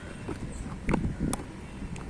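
Outdoor background noise with a dull thump about a second in, followed shortly by a single sharp crack.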